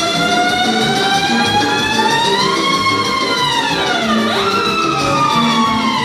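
Live band playing dance music for a circle dance, led by one long sliding melody note that climbs slowly, dips sharply and swoops back up about four seconds in, then glides down over a steady accompaniment.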